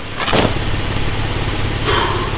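A vehicle's engine running at a steady idle, a low hum that comes in just after the start. There is a short burst of noise a moment in and another near the end.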